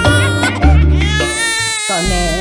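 A long, high-pitched crying wail, held for over a second, over background music with a heavy bass beat that cuts out near the end.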